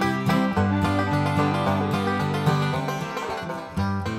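Upbeat bluegrass-style instrumental background music, with banjo and other plucked strings over a bass line.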